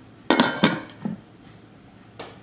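Glass lid set onto a slow cooker: two clinks about a third of a second apart, each ringing briefly, then a faint knock as it settles.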